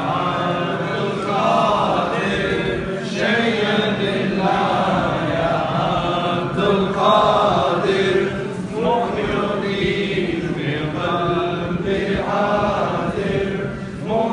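A group of men chanting together in unison, a devotional chant sung in long, continuous melodic phrases.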